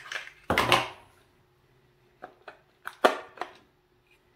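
Hard plastic clicks and knocks as the grass-shear blade attachment of a Ryobi ONE+ shear is unlocked and pulled off its handle: a louder knock about half a second in, a few small clicks, then another knock about three seconds in.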